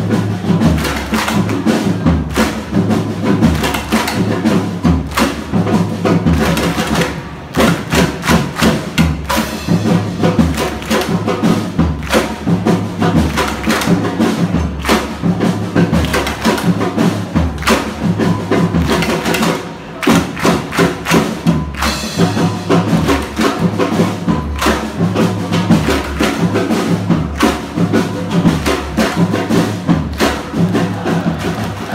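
Football supporters' drums beaten in a fast, steady rhythm, with two brief breaks in the beat.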